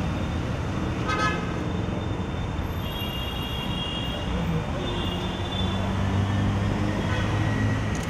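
Street traffic running steadily, with car horns tooting several times.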